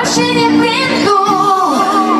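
Live pop song played through stage loudspeakers, with a woman singing lead over the backing music.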